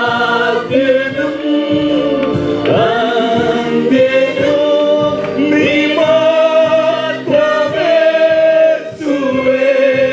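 A small group of worship singers, women and a man, singing a Malayalam Christian worship song into microphones, in long held notes over a steady accompaniment beat.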